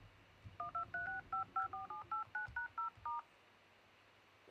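iPhone X keypad touch tones (DTMF) from the phone's own loudspeaker: about thirteen short two-note beeps in quick succession over roughly two and a half seconds as the emergency-call keypad is tapped. This is a check that touch and sound work after the board repair.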